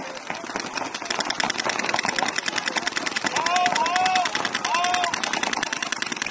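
Paintball markers firing in rapid streams from several players at once, a dense continuous run of pops that grows louder after about a second, with shouts between players around the middle.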